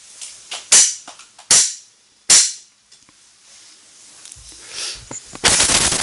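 Three sharp, loud claps about three-quarters of a second apart, then a short burst of noise near the end.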